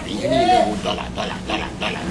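A man's voice talking and vocalizing, with one drawn-out exclamation that rises and falls in pitch about half a second in, over a steady low hum.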